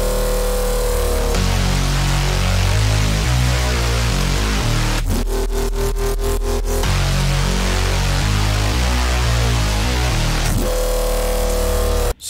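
A heavy drum and bass drop at 175 BPM playing back from FL Studio, with stacked bass layers, a sub bass and drums. About five seconds in, the full bass drops out for a short gap filled by one held, pulsing screamer-bass note.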